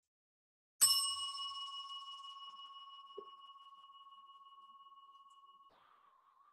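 A metal chime struck once, ringing with a clear high tone and fainter overtones that fade slowly over about five seconds before being cut short near the end.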